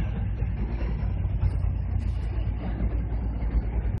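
Scania R620's V8 diesel through an open (straight) exhaust pipe, a deep steady rumble as the truck drives away.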